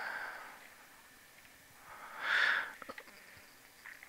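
A single breath into the microphone, about half a second long, a couple of seconds in, followed by a few faint clicks; otherwise quiet room tone.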